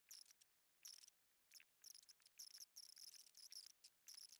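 Near silence: room tone with faint, high-pitched chirping in repeated pulses.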